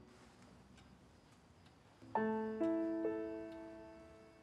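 Background music: a faint, nearly quiet stretch, then slow, soft piano notes entering about two seconds in, each struck note ringing and fading.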